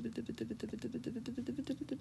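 A person laughing, a quick high-pitched giggle in even pulses of about ten a second.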